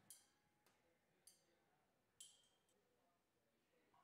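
Near silence broken by four faint clinks of laboratory glassware being handled in the first two and a half seconds, the last the loudest.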